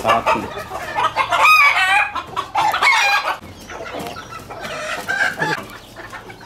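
Ornamental chickens clucking, with a rooster crowing about one and a half seconds in and a shorter call soon after. The calls are quieter in the second half.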